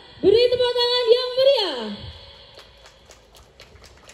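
A person's voice calling out one long, held, drawn-out note that falls off in pitch at the end. It is followed by a run of faint short clicks.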